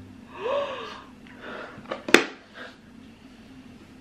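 A short gasp with a rising-then-falling pitch, then a single sharp click about two seconds in as the cardboard gift box holding a broken chocolate egg is handled.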